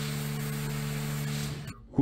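Car-wash pressure washer spraying a car: a steady hiss of water with a low steady hum under it, cutting off shortly before the end.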